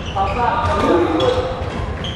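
People talking in a large, echoing sports hall, with short squeaks of sneakers on the wooden court floor near the start and a little past the middle.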